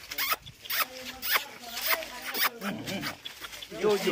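Dry leaf litter crackling and rustling in a quick series of short scrapes as a rope-tethered dog shifts about on it.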